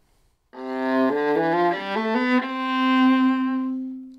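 Viola bowed legato: a short rising run of smoothly connected notes that settles on a long held note, which fades near the end.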